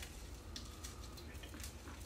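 Faint crinkling of plastic cling wrap as a fresh rose stem is pushed through it into wet floral foam, over a low steady room hum.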